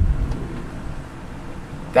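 Low rumble of a handheld microphone being moved, fading within the first half second, then faint steady background noise.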